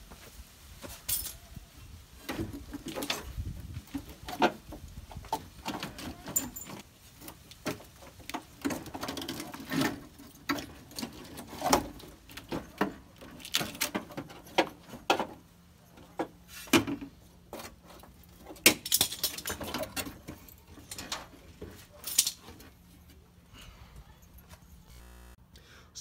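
Irregular clicks, knocks and light rattles of hands handling metal parts and rusty debris around the car's front radiator support, with no steady machine sound.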